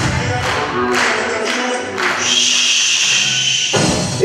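Egyptian shaabi dance music playing, with percussion hits about every half second, then a long high held note from about halfway through that stops just before the end.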